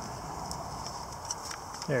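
Faint crinkling and rustling of a foil-wrapped ration pouch being crunched into a tight gap by hand, with a few light ticks.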